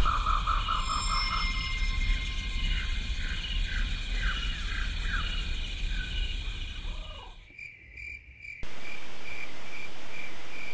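Evenly repeated chirping like crickets or other night insects, over a steady hiss, with some falling calls mixed in. The sound cuts out abruptly for about a second, about seven and a half seconds in, then steadier chirping resumes.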